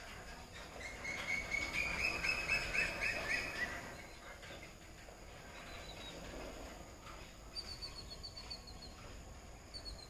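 Birds chirping: a run of quick repeated chirps for a few seconds near the start, then a short trill of falling high notes later on.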